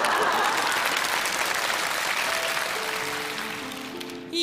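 Studio audience applauding, loudest at first and dying away towards the end, with soft background music underneath.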